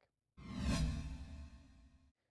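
A whoosh transition effect of the programme's bumper: a swelling swoosh over a deep bass tone, starting about a third of a second in, peaking soon after and fading away.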